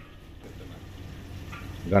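Hot ghee in a large pot sizzling faintly and steadily, with deggi red chilli powder just added to it.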